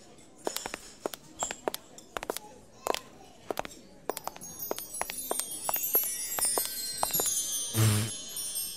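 A string of separate sharp clinks, like dishes and cutlery in a canteen, through the first half; then from about halfway a dense, shimmering cascade of high chime notes, as from a wind chime.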